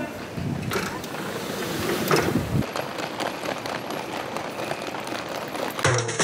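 Outdoor curbside ambience: steady traffic and street noise with faint, indistinct voices. Music with drums cuts in at the very end.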